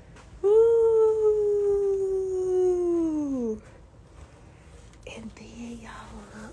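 A woman's voice holding one long drawn-out vocal note for about three seconds, sinking slowly in pitch and then sliding down sharply as it ends. A quieter voice follows near the end.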